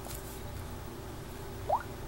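Steady low hum of room tone, with one short rising squeak near the end.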